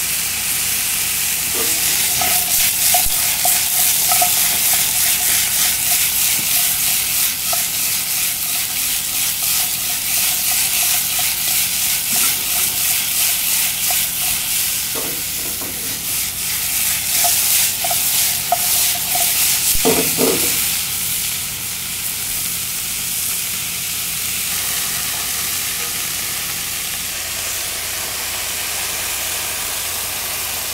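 Beef cubes, onion and garlic sizzling in hot oil in a frying pan while being stirred, with a steady hiss and light scraping ticks. Light clinks of the utensil against the pan come in short runs, and a louder knock comes at about twenty seconds.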